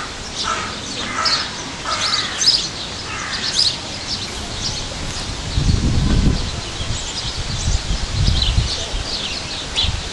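Several birds chirping and calling, with many short high chirps throughout and a few lower, harsher calls in the first three seconds. A low rumble comes in twice, around the middle and again a couple of seconds later.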